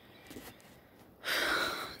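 A person's breathy exhale, a sigh of under a second, starting a little past the middle.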